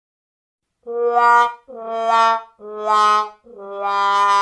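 Sad-trombone style comic fail sting: four separate brass notes stepping down in pitch, starting about a second in.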